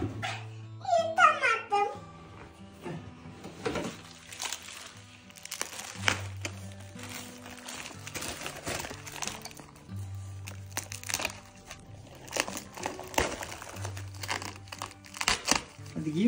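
Plastic bag crinkling as it is handled and opened, in a run of short crackles, over soft background music with slow held bass notes. A brief voice is heard about a second in.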